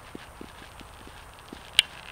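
Footsteps on a leaf-littered forest floor: soft, even thuds about three or four a second, with one sharp click near the end.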